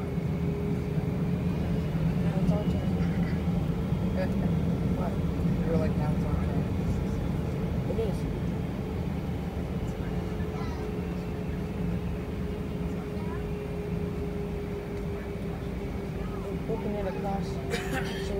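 Airbus A320 engines at taxi power, heard inside the cabin: a steady low rumble with a constant humming tone over it.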